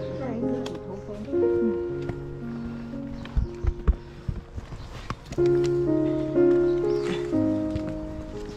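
Background music of sustained chords that change roughly once a second. A few low knocks fall in the middle.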